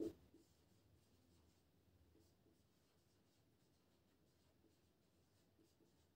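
Faint scratching of a marker writing on a whiteboard, with one short click at the very start.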